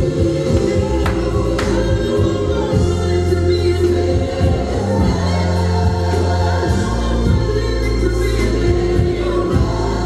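Gospel music with choir singing over a steady, sustained bass, with two sharp percussive hits about a second in.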